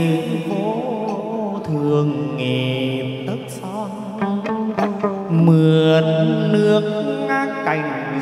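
Chầu văn ritual music: a sliding, wavering sung melody over the plucked đàn nguyệt moon lute, with sharp percussion strikes now and then.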